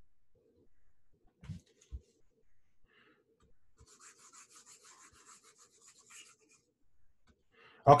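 Faint, rapid scratchy rubbing of a hand-held pointing device dragged over a desk surface while on-screen ink is erased, after two soft knocks about one and a half and two seconds in.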